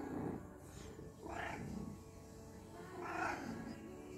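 Domestic tuxedo cat purring steadily while being stroked, a sign of contentment.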